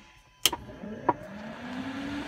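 A sharp switch click, then an electric whine that rises steadily in pitch: aircraft electrical equipment spinning up as the G1000 avionics are powered back on.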